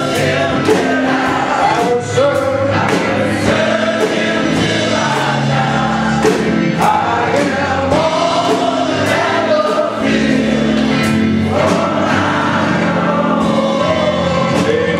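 Gospel choir singing a song with a steady beat behind it.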